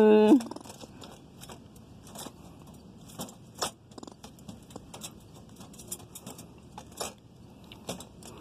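Squirrel caught in a wire-mesh live trap, moving about inside: its claws scratch and tap on the metal floor plate and mesh, making scattered light metallic rattles and clicks, the sharpest about three and a half seconds in and again near seven.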